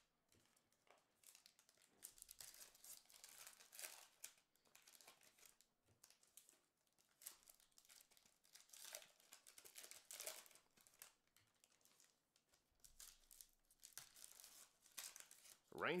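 Faint crinkling and tearing of a trading-card pack wrapper being opened and the cards inside handled, in short scattered rustles.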